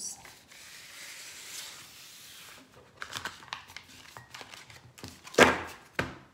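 Oracle cards being swept together across a tabletop and gathered into a deck. A soft sliding rustle comes first, then a string of small clicks as the cards are stacked, and one sharper, louder tap near the end.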